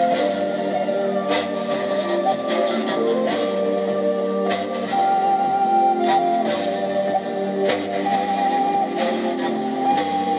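Live music through PA speakers: an end-blown wooden flute plays a slow melody of long held notes that change every second or two, over an amplified backing accompaniment with occasional percussive hits.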